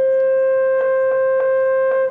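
French horn playing a solo, holding one long steady note.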